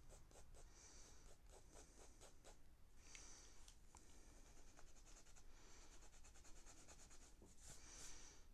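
Faint scratching of a fine liner pen drawing on paper: runs of short strokes with brief pauses between them.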